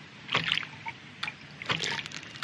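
Half-inch hydraulic ram pump's brass waste valve being pushed open by hand and closing again, each stroke a short sharp knock with a rush of water, about three times at uneven spacing of roughly half a second to a second. This is hand-priming to build pressure in the pump's tank; with only five feet of delivery lift there is too little back pressure for the pump to keep cycling on its own.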